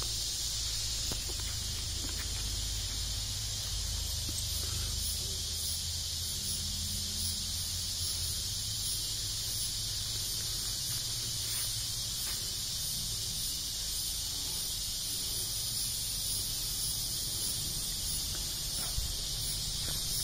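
Steady, high-pitched chorus of insects, an even shrill hiss with no break, over a faint low rumble that is stronger in the first half.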